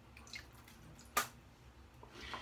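Water dripping onto a shaving-soap puck in a lather bowl, with one sharp drip about a second in and a fainter one just before it.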